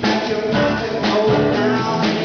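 Small live band playing amplified music, with guitar and keyboard.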